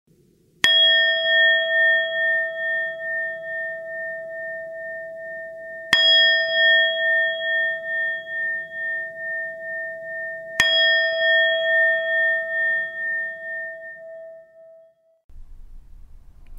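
A singing bowl struck three times, about five seconds apart, each strike ringing out and slowly fading with a wavering shimmer; the last fades away just before the end.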